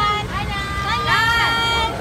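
Several high-pitched voices calling out in long, drawn-out notes that rise and fall and overlap, loudest in the second half, over a steady low rumble.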